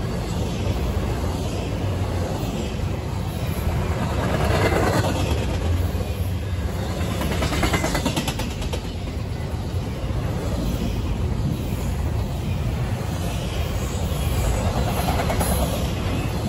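Double-stack intermodal freight train passing close by: a steady rumble of its well cars' wheels on the rails, with a run of clicking from the wheels about halfway through.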